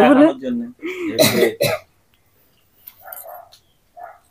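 A woman's talking trails off, then comes a single loud throat-clearing cough about a second in, followed by quiet.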